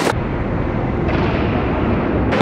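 Loud, steady rumbling noise from a camera moving fast through a concrete skatepark: wind buffeting the microphone, mixed with wheels rolling on the concrete.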